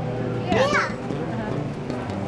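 Children's voices and chatter, with one child's high voice calling out about half a second in, its pitch rising and then falling.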